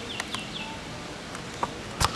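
A bird chirping a few short falling notes in the first half-second, over steady outdoor background noise, with a few light clicks scattered through.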